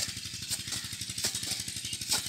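A small engine running with a steady, fast, even chug, with a couple of sharp knocks from a hoe blade striking the dry soil of the channel.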